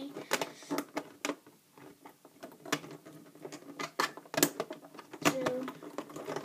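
Plastic hook tool clicking and tapping against the pegs of a plastic rubber-band loom as loom bands are hooked over the pegs, giving irregular sharp clicks.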